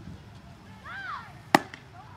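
A baseball smacking into a leather fielding glove as it is caught: one sharp pop about one and a half seconds in.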